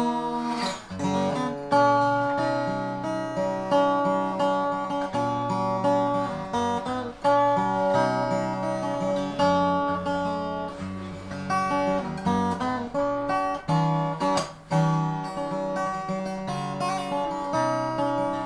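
Gardner handmade slot-head acoustic guitar played solo, chords picked and strummed in a slow progression with the notes ringing on.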